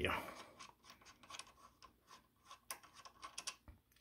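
Faint, irregular clicks and scrapes of small metal and plastic parts being handled: fingers working a screw and plastic link on the threaded rod of a rowing machine's magnet-resistance linkage.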